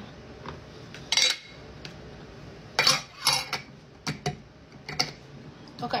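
Metal fork clinking and scraping against a plastic food container of pickles and beets, a handful of short sharp clicks with the loudest about a second in and around three seconds in.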